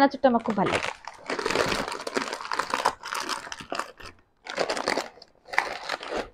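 Plastic snack packets crinkling and rustling in a few bursts as they are handled and pulled out of a cardboard box.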